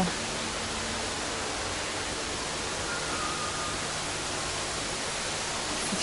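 Steady, even hiss of background noise, with a faint short tone about three seconds in.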